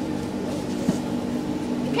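Steady hum inside an electric suburban train carriage, with a single short click about a second in.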